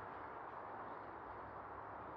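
Faint, steady outdoor background noise with no distinct sounds standing out.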